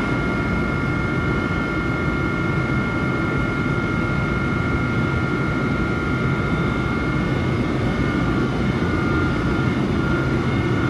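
Siemens ACS-64 electric locomotive standing with its cooling blowers running: a steady whir over a low rumble, with two high, even whining tones.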